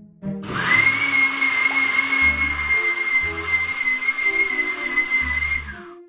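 Countertop blender switching on and running with a steady high-pitched whine for about five seconds, then cutting off just before the end. It has been programmed to start by itself to scare a cat away from marking.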